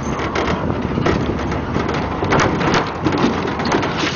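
Pickup truck driving over a rough dirt road, heard from the open bed: wind buffeting the microphone over steady road noise, with frequent rattles and knocks.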